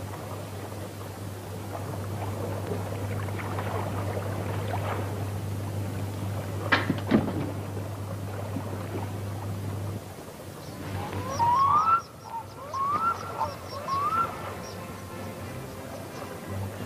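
A bird calling three times near the end, each call a short rising note about a second apart. Before the calls there is a steady low hum and a single sharp knock about seven seconds in.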